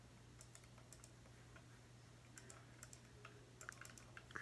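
Faint computer mouse clicks, mostly in quick pairs, repeated a few times a second or so apart, over a steady low hum.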